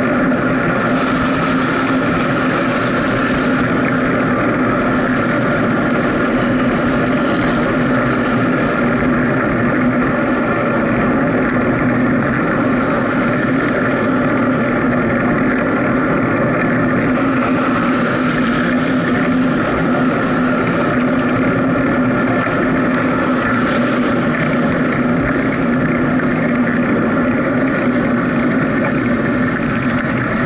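Steady road and wind noise from riding along a highway shoulder, with a constant droning hum that holds one pitch throughout. Now and then a passing vehicle's hiss swells up and fades.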